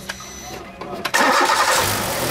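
A car engine is started about a second in and keeps running loudly. Its brake-servo vacuum hose is cracked and drawing in air, which the mechanic blames for the unsteady idle and the hard brake pedal.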